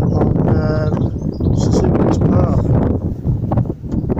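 Wind buffeting the microphone, a steady low rumble, with a short hummed voice sound about half a second in.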